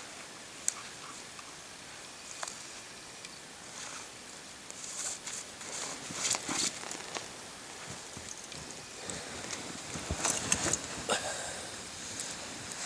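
Soft rustling and scuffing of clothing and snow as a man works at his snowshoe bindings and shifts his feet, growing busier and louder in the last few seconds as he moves through deep snow.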